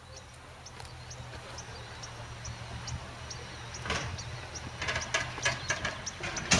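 Scrap-yard machinery working in the distance: a steady low engine drone, with sharp metal clanks and crunches of scrap coming in about two-thirds of the way through.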